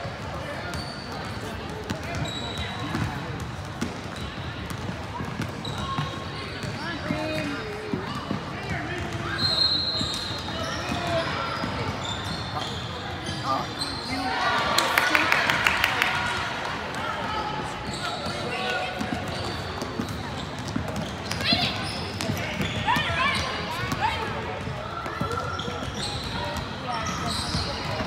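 Gym sounds during a basketball game: a basketball bouncing on the court amid spectators' voices, echoing in a large hall, getting louder about halfway through.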